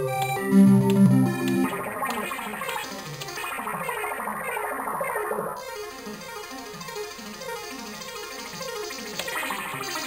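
Sony ACID synth arpeggio loops at 120 bpm previewing one after another: a repeating keyboard-like arpeggio pattern. It switches to a different loop about two seconds in and again a little past halfway.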